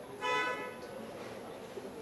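A short, steady-pitched toot, like a car horn, about a quarter second in, over a murmur of voices.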